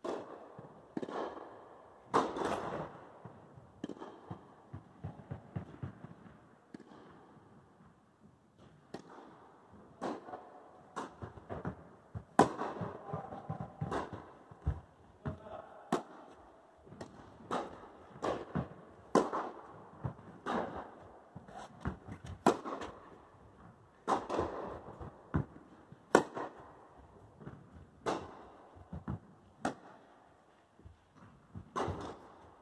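Tennis rallies on an indoor court: sharp racket strikes and ball bounces come every second or so, each hit ringing briefly in the hall.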